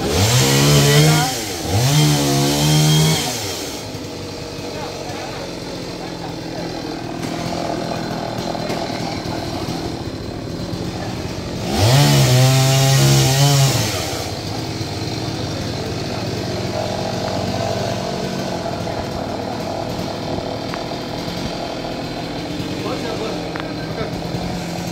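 Chainsaw revving up to full throttle three times: two short bursts back to back near the start and one of about two seconds around the middle. Each rev climbs fast, holds and drops away, and the saw runs lower and steadier in between.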